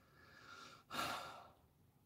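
A person's breath between phrases: a faint inhale, then a louder sigh out about a second in.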